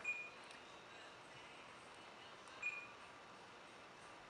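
Two short, high touchscreen key beeps from a Jensen VM9115 DVD receiver as its screen is tapped, one at the start and one about two and a half seconds later, over faint room tone.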